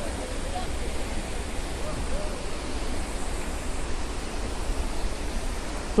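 Steady rushing noise of a waterfall and the river below it, with faint voices in the first couple of seconds.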